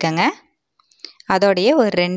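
Speech only: a voice talking, with a pause of about a second in the middle.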